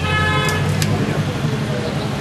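A vehicle horn gives one steady honk lasting about a second, over a constant low street-traffic rumble.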